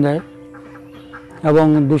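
A man's voice speaking Bengali, which breaks off for about a second. In the pause there is a faint low steady hum and faint poultry calls.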